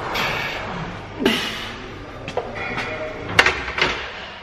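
Barbell back squat in a gym: breathy exhales from the lifter, then a few sharp knocks from the bar and plates, the loudest two close together near the end.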